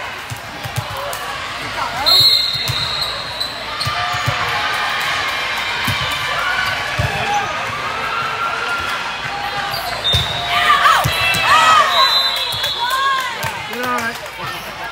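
Indoor volleyball rally: a referee's whistle blows about two seconds in and again later, with the ball being struck and sneakers squeaking on the sport court, the squeaks thickest near the end, over crowd chatter.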